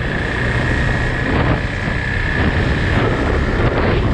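Wind rushing over a helmet-mounted GoPro's microphone while riding, over the steady running of a KTM RC 390's single-cylinder engine. A faint steady high whine sits in the noise through most of it.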